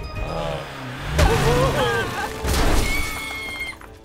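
Cartoon crash and shattering sound effects: two loud smashes about a second apart as a jeep breaks through a wall, over music, with a short vocal exclamation between them.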